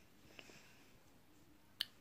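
Near silence, room tone, broken by one sharp click shortly before the end.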